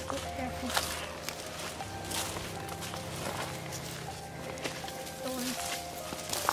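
Footsteps walking through dry fallen leaves and brush on a woodland trail, with irregular short crackles of leaf litter underfoot.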